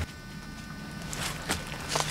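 Quiet outdoor background with a faint steady hum and two light ticks in the second half.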